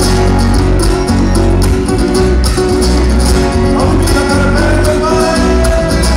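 Live Argentine folk band playing a zamba on acoustic guitars, electric bass and bombo legüero drum, with a strong bass line and steady drum strokes. A voice starts singing about four seconds in.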